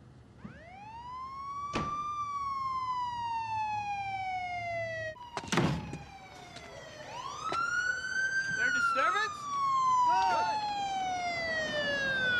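Police car siren wailing in two long sweeps, each rising in pitch and then slowly falling. A sharp knock comes about two seconds in and a heavier thump about five and a half seconds in.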